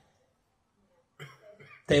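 A pause in a man's speech: near silence, then a few faint, brief vocal sounds a little past halfway, and his speech through a microphone starts again just before the end.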